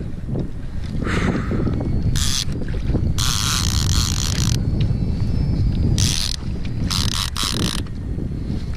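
Wind rumble on the microphone, broken by several bursts of a Penn Squall conventional reel's drag buzzing as a hooked fish pulls line, the longest lasting about a second and a half around three to four seconds in.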